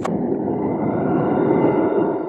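A loud, steady low-pitched noisy drone with faint high steady tones over it, such as a sound bed laid under the opening titles.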